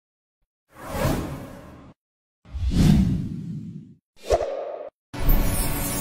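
Three swoosh sound effects one after another, the third one short, then a loud musical hit about five seconds in that rings on and slowly fades: the sound of a channel logo intro sting.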